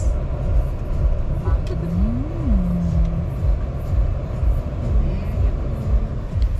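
Road and engine rumble of a slowly moving car, heard from inside the cabin. About two seconds in, a single voice-like tone rises and falls in pitch, then holds briefly.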